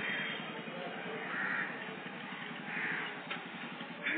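Crows cawing three times, about a second and a half apart, over a steady low hum.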